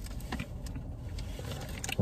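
Low steady rumble inside a car cabin, with a few faint crinkles of paper sandwich wrapping.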